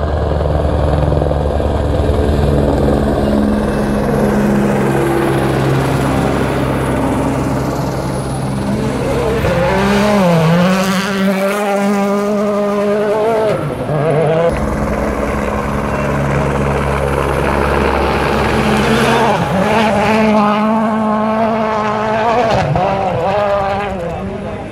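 Rally car engine at high revs on a gravel stage, the pitch climbing and dropping with gear changes as it passes, swelling loudest twice.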